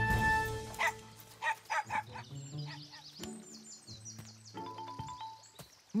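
A small dog barking about four quick times in the first two seconds, over light background music.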